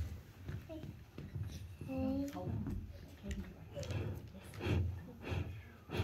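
Young children talking quietly, one calling out "hey" about two seconds in. There are a few soft, low thumps in the second half.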